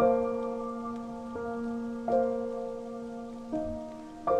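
Slow solo piano waltz, with notes and chords struck about four times and each left to ring and fade, over a soft bed of falling-rain sound.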